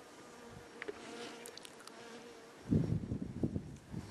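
A flying insect buzzing with a steady hum for the first couple of seconds, then a loud, irregular low rumble from about three seconds in.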